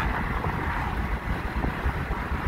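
Steady road and engine noise inside a moving vehicle's cab, with wind rumbling on the microphone.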